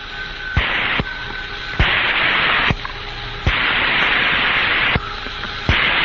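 Radio static on a Mercury capsule's air-to-ground voice link: hiss that jumps between loud and quieter stretches every second or so, each switch marked by a click, with a faint steady whistle in the quieter parts.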